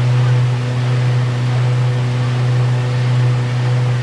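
A cruise boat's engine running steadily, a low, even drone with a faint steady hum above it, as the boat travels along the river.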